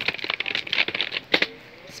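Computer keyboard keys clicking and rattling under the fingers, a quick irregular run of clicks that stops about one and a half seconds in.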